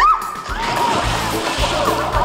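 A person falling into a swimming pool: a big splash and churning water over background music, with a sharp rising sweep as the fall begins.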